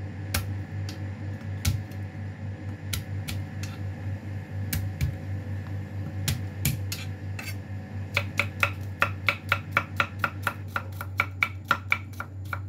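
Kitchen knife mincing crushed garlic cloves on a cutting board: a few scattered knocks of the blade at first, then from about eight seconds in a fast, even run of chopping strokes, about five a second. A steady low hum runs underneath.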